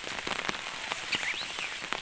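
Rain falling on an umbrella held overhead: a steady hiss with many small, separate drop taps.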